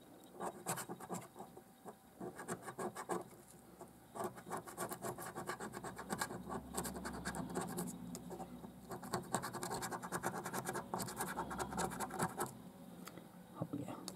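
A coin scratching the silver coating off a paper lottery scratch card in quick, rasping back-and-forth strokes. There are short bursts at first and a lull about two seconds in, then several seconds of near-continuous scratching that eases off near the end.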